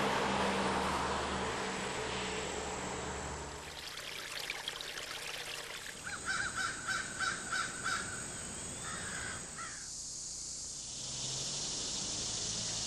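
Outdoor ambience with a steady hiss. About six seconds in, a bird gives a quick run of about seven calls, and a shorter call follows a couple of seconds later.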